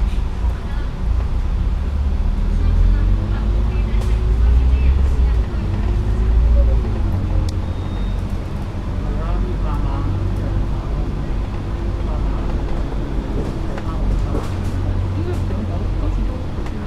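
Double-decker bus engine and drivetrain in motion through city traffic, heard from the upper deck: a steady low rumble with a whine that rises and falls with road speed, then holds level.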